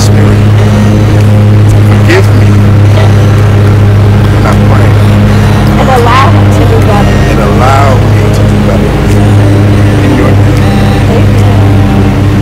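People's voices over a loud, steady low hum.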